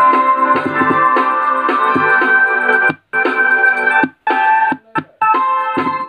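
Music played through a small Bluetooth speaker with its bass and treble cut off. About halfway in the sound starts cutting out abruptly, dropping to silence for a moment several times. These are the intermittent dropouts that appear when both of the speaker's drivers are connected.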